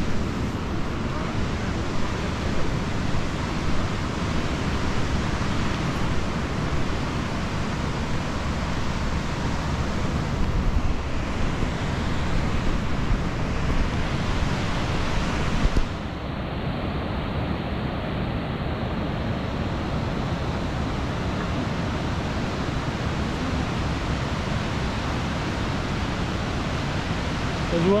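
Steady rush of ocean surf breaking below sea cliffs, mixed with wind on the microphone. About halfway through, the high hiss drops away and the sound gets slightly quieter.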